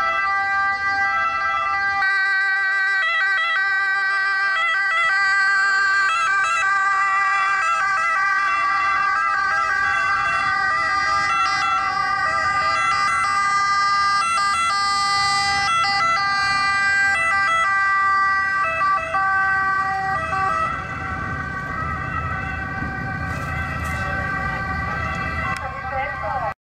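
Ambulance two-tone sirens sounding continuously, stepping between pitches about once a second. Vehicle engine and road rumble grows in the second half as the ambulances drive across.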